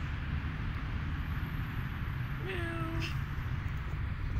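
A cat meows once, a short call about two and a half seconds in, over a steady low rumble.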